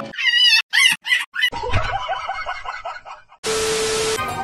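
Edited comedy sound effects: a high warbling effect in short bursts, then a lower pulsing pitched passage. Near the end a sudden burst of static-like hiss with a steady hum, a glitch transition effect.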